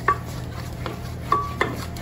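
A wooden spoon stirring and beating thick choux pastry dough in a stainless steel saucier, knocking sharply against the pan about four times, one knock ringing briefly. The dough is being cooked over low heat until it forms a smooth ball that pulls away from the sides.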